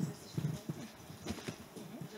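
A few soft, low knocks and bumps, irregularly spaced over faint room noise: handling noise.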